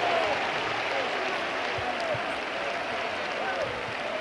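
Basketball arena crowd applauding and cheering after a home-team basket: a steady wash of noise with a few scattered shouts.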